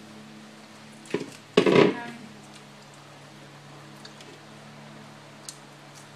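A light knock, then about a second and a half in a short, louder clatter as a plastic mixing bowl is set down on the kitchen counter, over a steady low hum.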